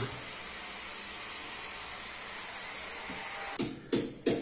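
A steady, even hiss that starts suddenly and cuts off near the end.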